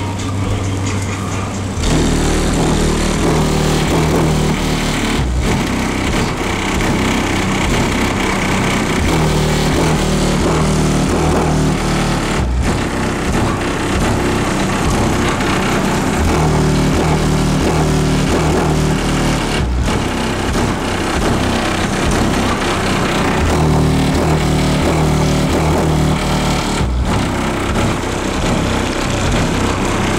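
Bass-heavy music played loud through the van's car-audio system of DC Audio Level 4 XL 15-inch subwoofers on a Hifonics amplifier, heard from outside the van. The deep bass comes in about two seconds in and pounds in a steady rhythm, with a brief break about every seven seconds.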